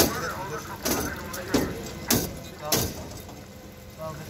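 Indistinct voices of people talking, with several short, sharp noises in the first three seconds, after which it grows quieter.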